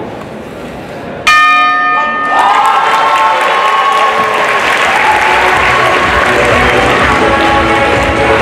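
Boxing ring bell struck about a second in, ringing for about a second to end the round, followed by crowd applause and cheering.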